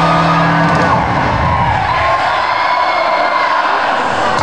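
Arena crowd cheering, with a held low amplified note from the band that fades out about a second in.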